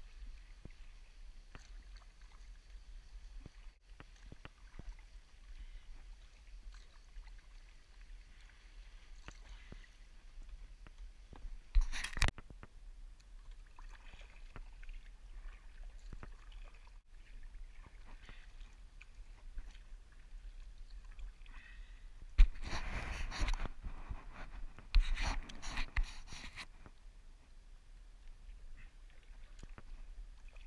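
Sea kayak paddle strokes on calm water: the blades dipping and dripping with light, steady water sounds. There is a short loud rush of noise about twelve seconds in and a longer loud stretch in two parts a little after twenty-two seconds.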